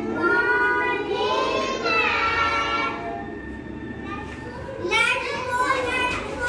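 Young children's voices singing or calling together in unison: a long drawn-out call over the first three seconds that rises and falls in pitch, then another beginning about five seconds in.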